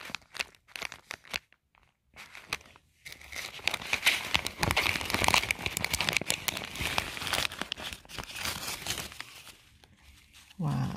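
Clear plastic pocket-letter sleeve crinkling as fingers work a crepe paper rosette out of its pocket. A few scattered crackles come first, then about three seconds in a dense, continuous crinkling that runs until shortly before the end.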